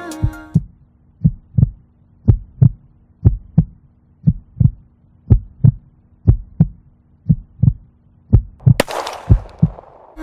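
Heartbeat sound effect: paired low thumps, about one pair a second, over a faint steady drone. About nine seconds in, a noisy burst fades away over about a second.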